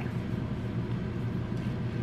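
A steady low mechanical hum with no breaks or distinct knocks.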